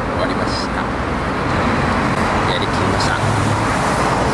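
Steady road traffic noise on a city street, a continuous rush of passing cars.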